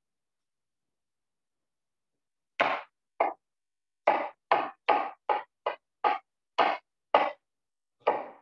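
Knife dicing an onion on a cutting board: about ten sharp knocks, starting about two and a half seconds in, roughly two a second. The blade bangs on the board because it is dull and needs sharpening.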